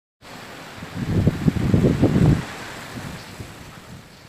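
Thunderstorm: a steady rush of wind and rain, with a loud low rumble of thunder from about one to two and a half seconds in, after which it dies away.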